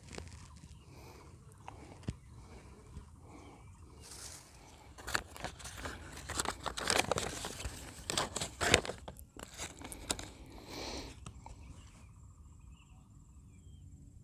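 A brown paper food wrapper being unfolded by hand, crinkling and rustling in short irregular crackles. The crackles start a few seconds in and die away before the end.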